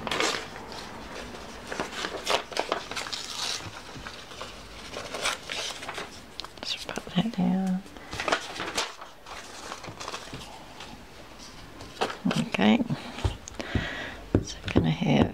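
Paper scraps being picked up, handled and pressed down by hand, with short irregular rustles and crinkles. A brief murmured voice comes in about halfway through and again near the end.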